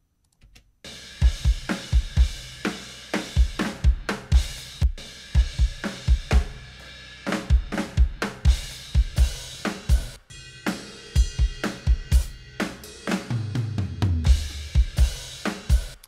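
A multitracked acoustic drum kit recording played back: kick, snare, hi-hat and cymbals in a steady beat. It starts about a second in and stops for a split second a little past two-thirds of the way through.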